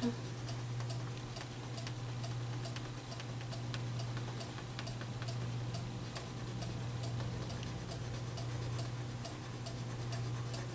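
Wax crayon scribbling on paper in quick short strokes: a stream of small, irregular scratchy ticks over a steady low hum.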